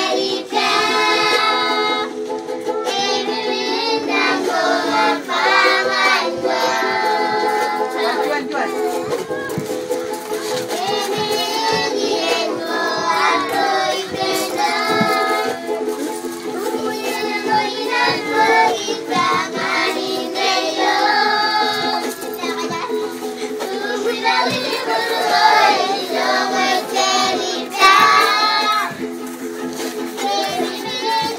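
A group of children singing a song together, with a ukulele strummed along.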